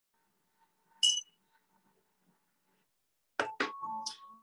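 A single short, high-pitched clink about a second in, as of a hard kitchen item lightly struck, followed by a few short sharp sounds near the end.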